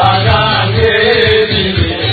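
A man singing a chant-like melody into a microphone over backing music with a steady, pulsing bass beat.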